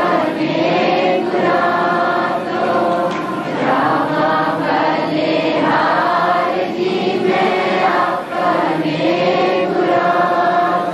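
A crowd of voices singing together in unison, a devotional chant or hymn carried on without a break.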